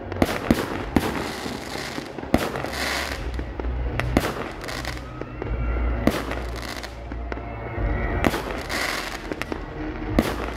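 Aerial fireworks shells bursting: a dozen or so sharp bangs at irregular intervals, over a continuous noisy wash and a low rumble.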